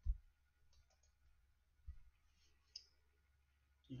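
A few faint clicks and short low knocks, a computer mouse being clicked and handled to page through slides: a knock at the start, a click about a second in, another knock near two seconds and a click near three.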